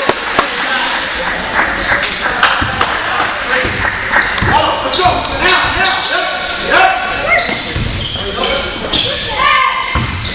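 A basketball being dribbled on a gym floor, with sneakers squeaking as players cut and drive, over the chatter and shouts of players and spectators in the gym.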